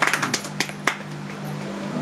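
Applause dying away: a scatter of last hand claps in the first second, then only a steady low hum.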